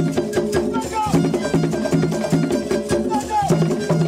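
Zaouli dance music: a group of West African hand drums playing a steady driving rhythm, with a pitched melody line over it that slides downward twice.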